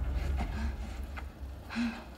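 Film soundtrack heard through cinema speakers: the score fades away into a low rumble, with a few short, faint vocal sounds and a click.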